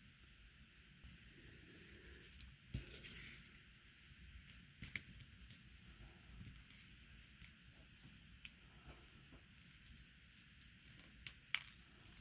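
Near silence with faint handling sounds: plastic pony beads clicking lightly and leather cord rustling as the beads are threaded by hand, with a few sharper small clicks, one about three seconds in and two close together near the end.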